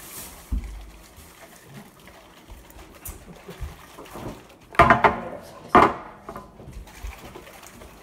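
Aerosol cans of Barbasol shaving cream being shaken by hand, a faint sloshing. Two short, loud sounds about a second apart break in near the middle.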